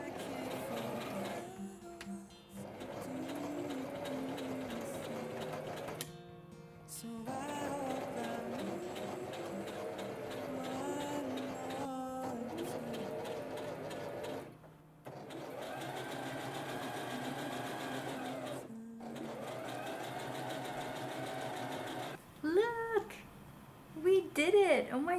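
Brother electric sewing machine running, stitching a straight seam through knitted fabric, in several runs broken by short pauses, with background music over it.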